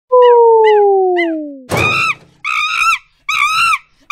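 A descending whistle-like tone with three short high chirps, then three loud, high-pitched, chimpanzee-like calls in quick succession, each under half a second and rising then falling in pitch.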